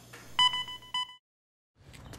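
Electronic beep from a hospital patient monitor: one steady high tone about half a second long.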